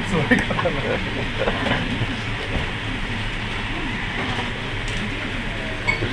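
Steady noise of a restaurant air conditioner running, with faint voices in the background during the first couple of seconds.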